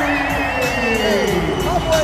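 Music playing loudly through an arena's sound system, with a held, wavering high note and a lower note sliding slowly downward over a haze of crowd noise.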